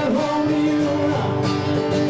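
Music with guitar playing, held notes with a few sliding pitches.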